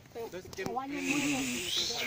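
People's voices talking, with a steady hiss joining in over the second half.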